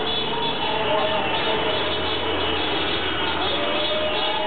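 City street traffic: cars driving past with a low rumble, and car horns sounding in long held notes over it.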